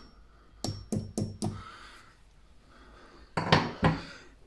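Steel claw hammer tapping a screw and plastic wall plug into a hole drilled through plaster into brick: four quick knocks with a slight metallic ring, then a louder knock or two near the end.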